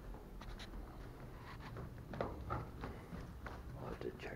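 Faint, irregular soft footsteps going down carpeted stairs, with scuffs and rustling.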